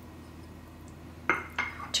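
Small ceramic dish clinking twice against metal, about a second and a half in, as seasoning is tapped out of it into a stainless steel pot. Before that, only a low, quiet room hum.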